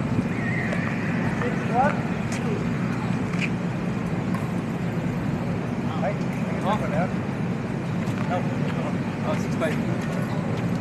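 People's voices calling out in short rising bursts, about three times, over a steady low hum of street traffic.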